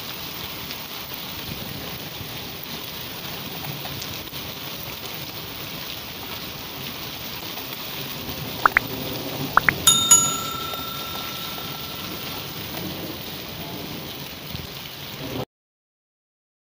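Steady rain and sleet falling on a concrete courtyard, a constant hiss. About nine seconds in, a few sharp clicks are followed by a ringing bell-like ding that fades over a couple of seconds: a subscribe-button sound effect. The sound cuts off suddenly near the end.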